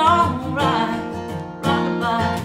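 A woman singing a country song to her own strummed steel-string acoustic guitar, the voice wavering on held notes at the start over steady chord strums.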